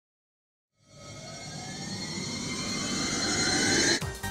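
A synthesized rising whoosh sweep: a build-up effect that starts about a second in, climbs steadily in pitch and swells in loudness, then cuts off suddenly at the end.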